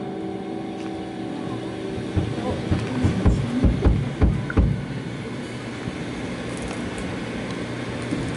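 Live rock band on stage between phrases of a song: a chord rings out and fades, a run of low drum thumps about halfway through, then a steady low rumble of amplifier and room noise.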